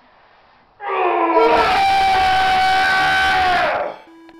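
A person's loud, long yell, starting about a second in, rising in pitch briefly, holding one pitch for about three seconds, then breaking off near the end.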